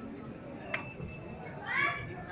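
Footballers' voices calling across an outdoor training pitch, with a loud rising shout near the end. A single sharp knock about a third of the way in, a football being kicked.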